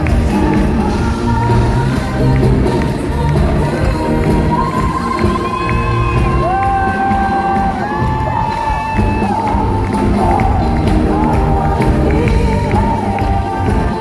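Live amplified pop music with singing and a steady beat, with long held notes midway, and the audience cheering along.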